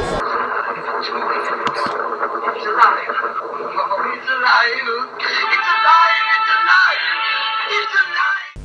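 Old film soundtrack with music and voices, muffled and lacking treble.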